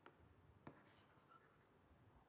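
Near silence broken by faint clicks of a stylus tapping a pen tablet, twice, as the on-screen eraser tool is picked.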